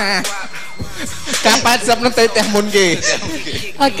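People laughing and talking over background music.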